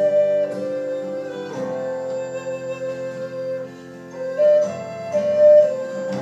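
Wooden end-blown flute playing a slow melody of long held notes that step to a new pitch every second or so, over acoustic guitar accompaniment.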